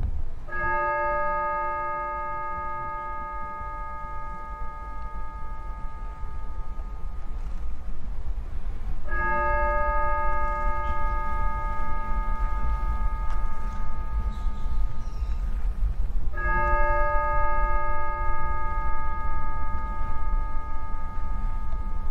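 A bell tolled slowly, three strokes about eight seconds apart, each ringing on for several seconds as it fades, over a steady low rumble.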